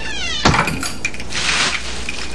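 A short falling whine, then an office door shutting with a sharp knock about half a second in, followed by the crinkly rustle of a plastic garbage bag being handled.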